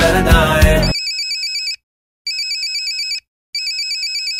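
Pop song music with a beat cuts off sharply about a second in, and a smartphone ringtone takes over: a high electronic warbling trill in rings just under a second long with short gaps, two full rings and a third starting near the end. It signals an incoming call.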